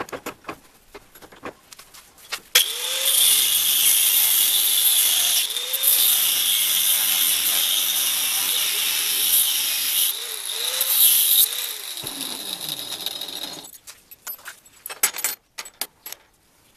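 Clinks and clicks of a steel coil being set in a bench vise. Then, from about two and a half seconds in, an angle grinder runs loudly for about eleven seconds with a steady high whine, cutting through the clamped coil to part it into split rings. It winds down, and a few metal clinks follow near the end.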